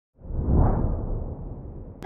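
A whoosh sound effect with a deep rumble, swelling up quickly just after the start and then slowly fading away.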